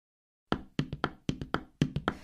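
Percussion opening a piece of music: about eight sharp, ringing hits in an uneven rhythm, starting about half a second in after silence.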